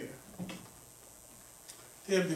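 A pause in a man's speech: a brief sound about half a second in, then quiet room tone through the pulpit microphone, with one faint click near the end.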